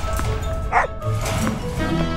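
A dog barks once, a little before the middle, over background music.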